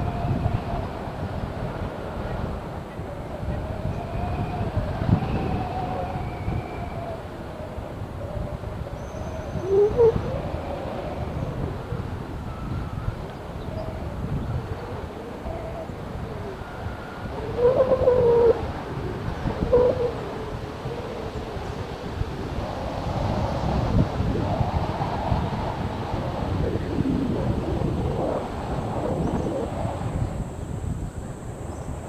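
Wind rushing and buffeting over the camera's microphone during a tandem paraglider flight, a steady rumble with louder gusts about ten and eighteen seconds in.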